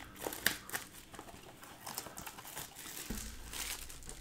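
Plastic shrink-wrap crinkling and tearing in short irregular crackles as a Panini Select basketball blaster box is unwrapped, with a few sharper clicks in the first second and a low handling bump near the end.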